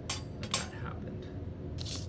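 Two light clinks of small glassware, a thin glass capillary tube and vial handled together, the second about half a second after the first, over a steady low background hum.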